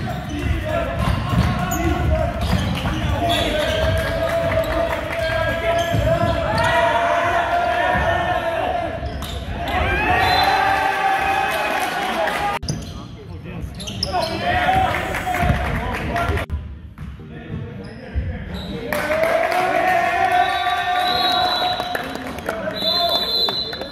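Basketball bouncing on a hardwood gym floor during play, with players' voices calling out across a large, echoing gym.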